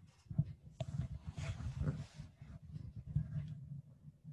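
Handling noise from the camera device being moved: irregular low rumbling and bumping on its microphone, with a click about a second in and a rustle that fades out by about the middle.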